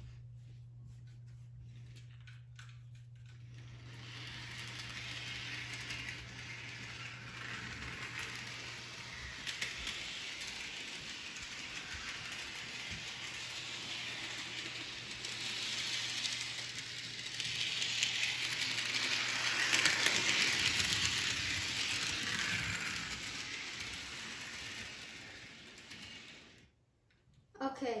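HO scale Thomas & Friends Edward model locomotive running on sectional track: a rushing, clicking rattle of wheels and motor that swells as it comes closer, is loudest about two-thirds of the way through, then fades. A low steady hum sits under the first few seconds, and the sound cuts off suddenly shortly before the end.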